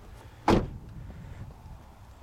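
A 2011 Nissan Leaf's rear passenger door being shut: one solid slam about half a second in, then only faint background.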